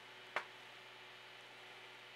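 Near silence with a faint steady hum, broken about a third of a second in by one short click: a fingertip tapping the printer's handheld touchscreen controller.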